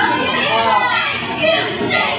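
Spectators at a wrestling match shouting and calling out, several voices at once, with children's voices among them.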